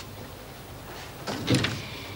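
Quiet room tone, then an office door shutting about one and a half seconds in.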